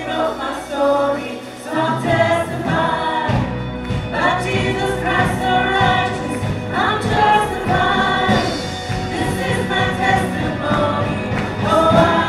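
Live contemporary worship band playing: a female lead singer with backing vocalists over electric guitars and drums, mixed with an audience microphone. The bass and drums come in fully about two seconds in.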